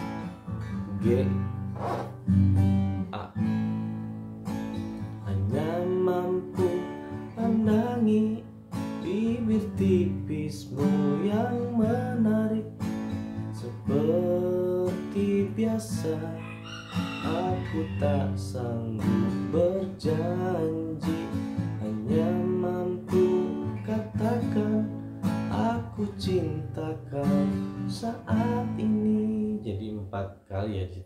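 Steel-string acoustic guitar played in a steady rhythm through a song's chord progression, with plucked and strummed chords.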